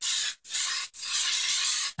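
Aerosol spray-paint can of black hissing in three bursts, two short and one longer, with a can that is running out of black.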